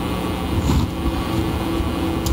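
Steady low hum of a large hall's background room noise, with a few faint steady tones running through it.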